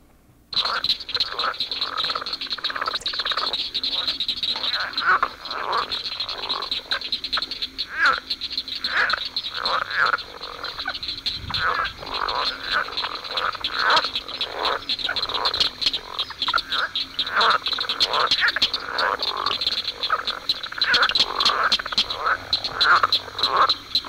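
Mating chorus of many southern leopard frogs (Rana utricularia): overlapping, rapidly repeated croaking calls over a steady high-pitched background trill, starting about half a second in.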